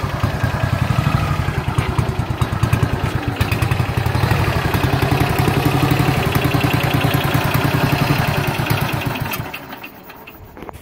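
1954 Ariel NH 350cc single-cylinder four-stroke motorcycle engine idling with a steady, evenly spaced firing beat, then dying away near the end.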